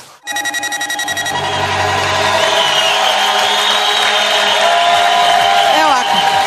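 A television show's electronic transition jingle. It opens with a quick run of repeated beeping pulses, then moves into held synthesizer tones.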